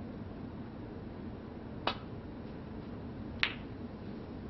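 Snooker break-off: the cue tip strikes the cue ball with a sharp click just under two seconds in, then about a second and a half later the cue ball clicks into the pack of reds with a slightly louder click.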